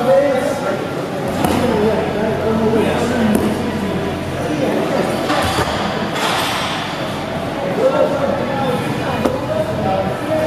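Indistinct voices echoing in a large hall, over the rustle and scuff of heavy cotton gis and bodies shifting on foam mats as two grapplers struggle, with a louder burst of rustling about five to six seconds in.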